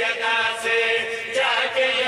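Several men chanting together in unison into a microphone, singing long held notes with a short break about one and a half seconds in.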